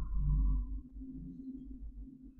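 Low ambient drone of the kind used in a dark stage soundscape: a deep rumble that fades away just under a second in, over a steady low hum.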